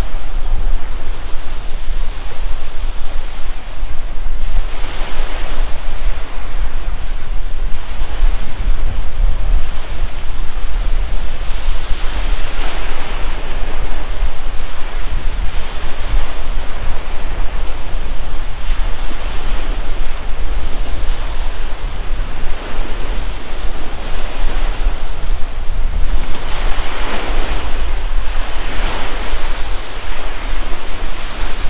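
Wind-driven waves breaking and washing on a gravel lakeshore, the wash swelling up every several seconds. Wind buffets the microphone throughout as a heavy low rumble.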